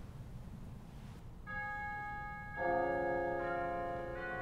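Church organ begins to play: a steady held chord starts about a second and a half in, and a fuller, lower chord joins about a second later.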